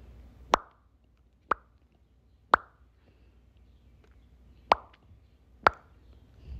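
Five short, sharp pops, each with a brief ringing tail, about a second apart with a longer gap in the middle. They are dubbed-in sound effects, not the sound of the flowers being touched.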